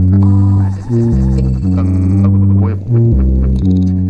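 Instrumental electronic dance music: a heavy synth bass line holding notes that change every second or so, with synth layers above it.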